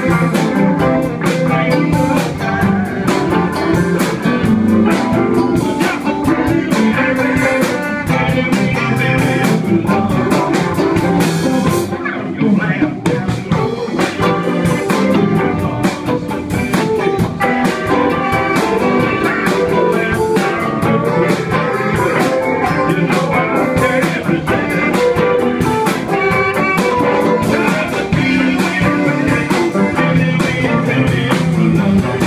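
Live band playing a loud, steady blues-style number: electric guitars over a drum kit.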